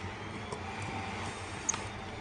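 Steady low background hum with a few faint, sharp clicks as a precision screwdriver turns tiny screws in an iPhone 4's logic board.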